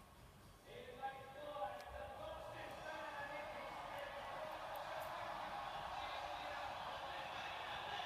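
A large stadium crowd cheering through a television's speaker. It swells from near quiet over the first couple of seconds, then holds at a steady level, with a voice over it near the start.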